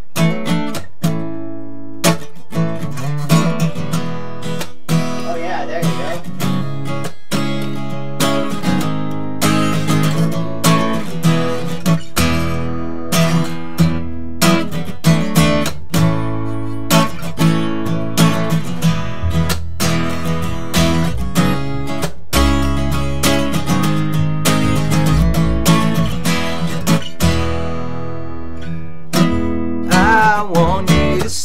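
Acoustic guitar strumming chords in a steady rhythm as an instrumental introduction, with an upright bass joining in with a deep bass line about twelve seconds in.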